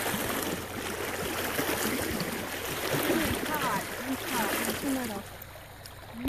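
Mountain creek water running steadily, with short stretches of voices partway through.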